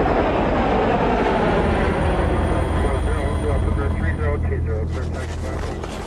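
Loud, steady helicopter engine and rotor noise, with a deep hum under it.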